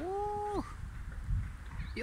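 A nutria (coypu) gives one drawn-out call at the start, about half a second long, rising at first and then holding level.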